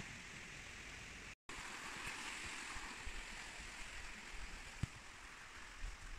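A stream rushing steadily past a forest path, a continuous watery hiss. The sound cuts out completely for a moment about a second and a half in, then carries on, with a few faint low knocks.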